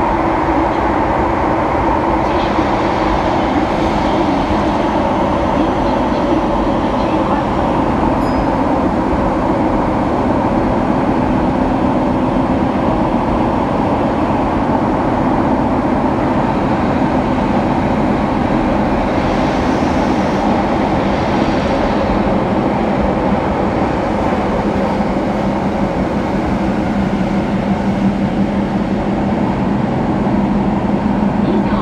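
Keihan 800 series train running through a subway tunnel, heard from the cab: a steady loud rumble of wheels on rail and running gear, with a low hum growing stronger near the end.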